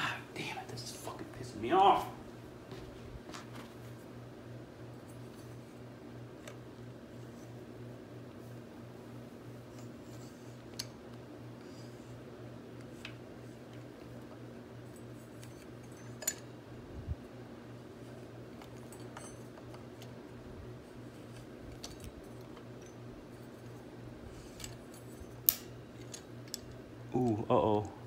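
Metal parts and tools clicking lightly and now and then against an ATV rear axle assembly as a collar is worked over a circlip by hand, a few isolated clicks with a sharper one near the end, over a steady low hum.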